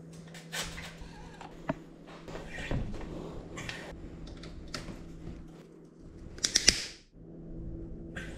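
A mountain bike dropper seatpost and saddle being handled and slid into the bike's seat tube: scattered clicks, scrapes and light rattles, with a quick run of sharp clicks about six and a half seconds in.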